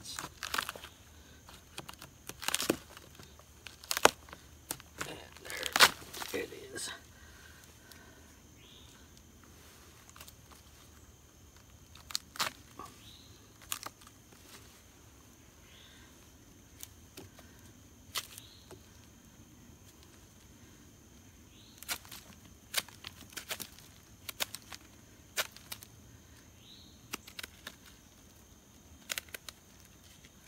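Knife prying and breaking apart a rotting pine log, its soft wood cracking, splintering and tearing in sharp snaps. The snaps come thickly in the first few seconds, then in scattered bursts as chunks are worked loose around a knot.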